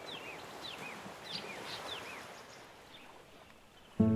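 Bird chirping in a nature ambience: about ten quick, high chirps, each sliding down in pitch, that stop a little past two seconds in. Under them is a faint wash of background noise that fades away toward the end.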